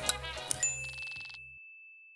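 Short sound-logo jingle for an animated channel logo: a couple of clicks over a low hum, then a single high ding about half a second in that rings on and fades away.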